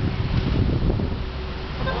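Wind buffeting the microphone of a handheld camera outdoors, a loud, steady low rumble and hiss.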